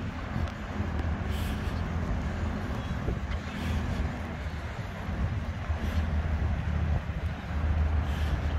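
Low, uneven rumble of road traffic from a multi-lane city road, with a few faint rushing swells.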